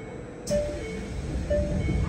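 A two-note chime repeats about once a second inside a Kanazawa Seaside Line train car. A sharp clack comes about half a second in, and then the low rumble of the rubber-tyred train rises as it starts to pull away.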